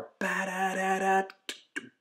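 A man vocalizing a guitar riff with wordless sung syllables: a quick run of short notes held at nearly one pitch, followed by a short click near the end.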